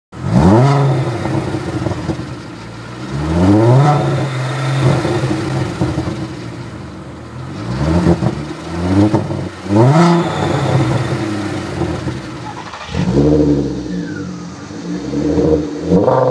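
Volkswagen Golf GTI 24-valve VR6 engine blipped repeatedly through an aftermarket exhaust. The revs rise quickly and drop back to idle about six times, every two to three seconds.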